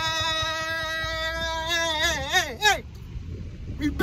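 A man's long, loud held yell on one steady pitch, which breaks into a wobbling warble, dipping three times, and stops about three seconds in. A low car-cabin rumble runs underneath.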